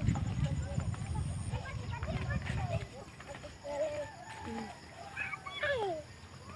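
Outdoor walking ambience: a low rumble of wind or handling on the microphone for about the first three seconds, over scattered faint distant calls that rise and fall in pitch, with one longer falling call near the end.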